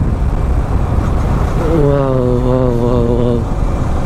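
Steady wind rush and motorcycle running noise while riding. From about two seconds in, a voice holds one drawn-out vocal sound for about a second and a half over it.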